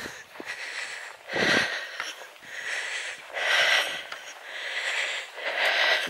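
A person breathing audibly close to the microphone, about one breath a second, with a low thud about a second and a half in.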